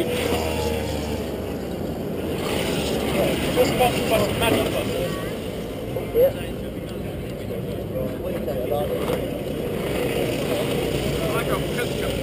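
Several Rotax Junior Max 125cc two-stroke kart engines idling together, with a few short rises in pitch from throttle blips about four and six seconds in.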